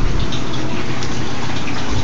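Steady rush of running water, an even, continuous sound.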